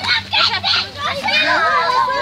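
Several children's voices talking and calling out over each other, excited and high-pitched.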